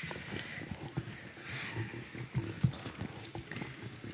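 Footsteps and scattered light knocks on a hard floor, irregular, over faint room noise.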